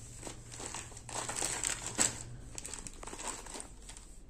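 Cloth rustling as hands fold and smooth a linen-cotton saree: irregular soft rustles with a few sharper ones, busiest in the middle.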